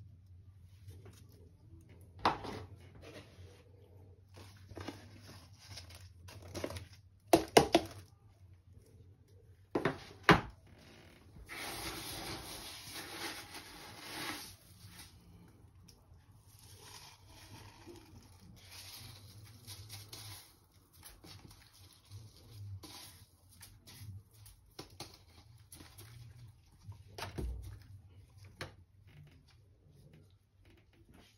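Repotting handling noise: small plastic nursery pots knocking as they are picked up and set down on a plastic tray, with a few seconds of dry rustling about midway as a handful of rice husk and coco fibre potting mix is crumbled and sprinkled over the pots. A low steady hum runs underneath.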